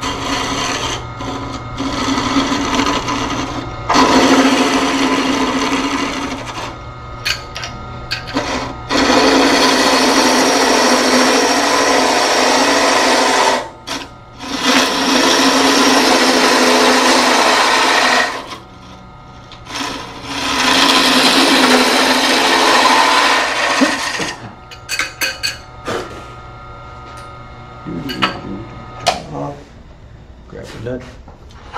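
A wood lathe spins a wooden block while a gouge with a 40/40 grind cuts it, making rough shaving noise in long passes several seconds apart over the lathe's steady hum. Near the end the cutting stops and a few scattered clicks and knocks follow.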